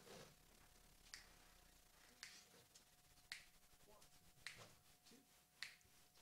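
Faint finger snaps, evenly spaced about one a second, setting the tempo as a count-in for a jazz big band.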